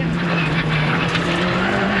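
Rally car engine heard from inside the cabin, running at steady high revs, with its pitch stepping slightly higher about one and a half seconds in. Tyre and road noise sit underneath.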